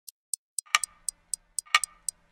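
Clock ticking: light, sharp ticks about four a second, with a heavier knock about once a second.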